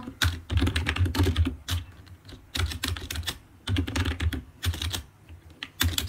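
Typing on a computer keyboard: quick runs of key clicks with brief pauses, the typist deleting and retyping a word.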